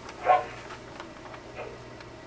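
A brief, loud, pitched sound effect from a touchscreen kiosk's golf game as the swing is played, followed by a few faint ticks.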